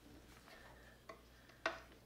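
Quiet handling of a wall-mounted blade balancer: faint fiddling noises, then one sharp click near the end as its parts are gripped.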